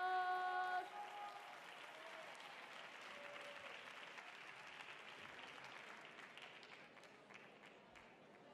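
A child's sung held note ends about a second in. The rest is faint audience applause that slowly dies away.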